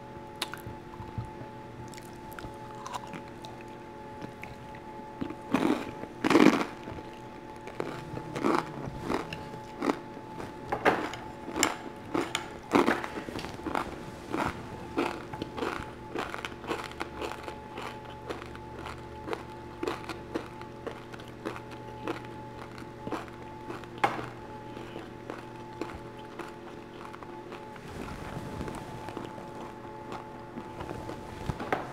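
Close-up chewing and biting of dim sum, a long run of short crunchy clicks and wet smacks starting about five seconds in, the loudest bites around six seconds. Soft background music with steady held tones runs underneath.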